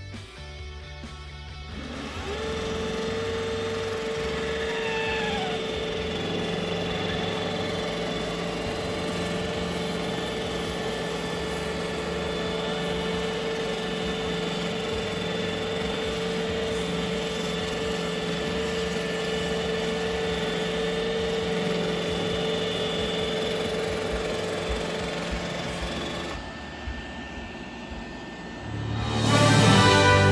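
iRobot Roomba i4 robot vacuum running with a steady motor whir and hum as it drives itself back to its dock. The sound drops off a few seconds before the end, and louder music comes in at the very end.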